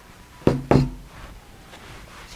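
Two quick knocks about a quarter of a second apart as an iPhone and a felt pouch are set down on a tabletop.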